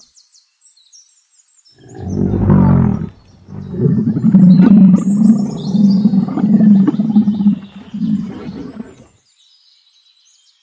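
Camel vocalizing: a short call about two seconds in, then a long, low call that swells and fades in uneven pulses until about nine seconds.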